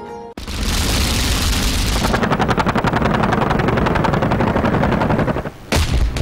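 Military weapons firing: an opening blast rolling on for a second or two, then rapid, continuous gunfire of about a dozen reports a second, and a single loud boom near the end.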